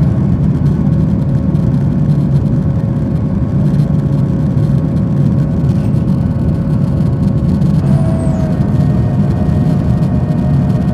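Cabin noise of a jet airliner climbing after takeoff: a steady low rumble of engines and airflow, with faint steady engine tones above it.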